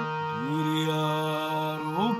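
Harmonium sounding sustained chords, with a voice sliding up into a long held note about a third of a second in, leading into a Balochi gazal.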